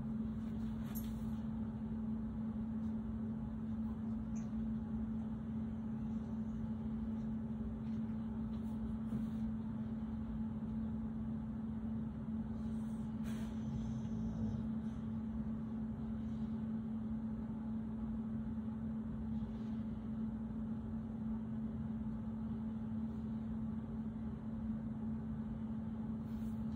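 Steady low background hum in a small room, one constant tone held throughout, with a few faint soft rustles.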